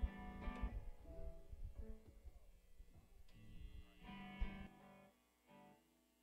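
Amplified guitar strumming and picking a few chords, stopping about five seconds in and leaving a faint electrical hum.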